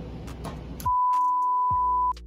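A single steady, loud beep: the test-pattern tone that goes with TV colour bars, used as an editing effect. It starts about a second in and holds at one pitch for just over a second, over background music.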